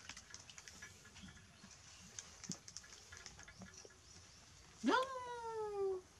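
Baby monkey giving one drawn-out call near the end, rising sharply in pitch and then sliding slowly down, the loudest sound here. Before it, faint clicks and taps of a plastic milk bottle being handled.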